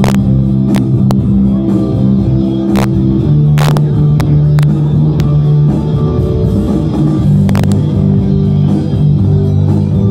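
Loud music with guitar and held bass notes that change every second or so, with a few sharp clicks over it.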